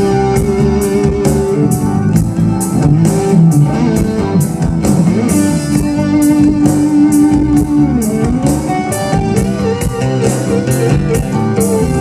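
Live rock band: an electric guitar plays a lead line over drums, with a long held note about halfway through that bends down and a wavering, vibrato note near the end, over a steady beat of cymbal strikes.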